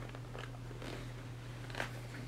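Paper pages of a picture book rustling and crackling as they are handled and turned, in a few short bursts, with the sharpest page flick near the end. A steady low hum runs underneath.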